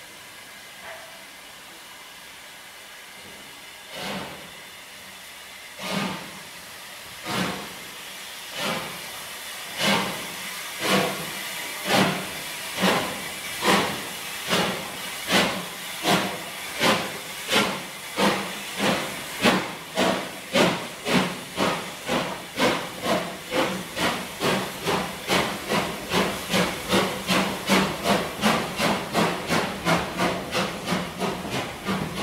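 Wheels of a loaded freight train's stone wagons clacking over rail joints, one clack every second or so at first, then faster and faster until they come two or three a second as the train picks up speed.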